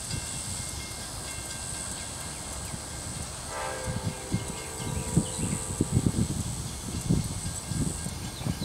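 Distant horn of an approaching Amtrak GE P42DC diesel locomotive, one long chord sounding about three and a half seconds in and lasting about two seconds, over an irregular low rumble.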